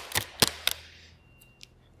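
Silver duct tape being pulled off the roll and wrapped around a pair of wrists: a few sharp crackles in the first second, then it goes much quieter.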